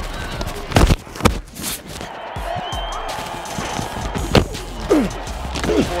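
Several hard thuds of football players colliding in pads and helmets, the loudest two about a second in and more near the end, over background music.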